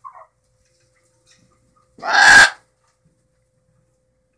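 Blue-and-gold macaw giving one loud, harsh squawk about two seconds in, lasting about half a second.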